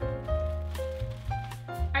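Background music: held notes over a bass line that changes note a few times, with drum hits.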